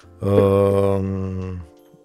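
A man's long, drawn-out hesitation sound, an 'uhh' held at one steady low pitch for about a second and a half while he searches for his next words.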